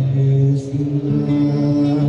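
Song: a singer holds long, drawn-out notes, stepping up to a higher held note about a second in.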